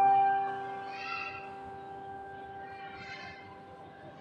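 Electronic keyboard playing in a piano voice: a held chord slowly dies away over the first second, leaving a quiet pause with only faint indistinct sounds.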